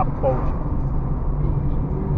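Steady low drone of a car's engine and tyres heard from inside the cabin while driving, with a brief fragment of a man's voice just after the start.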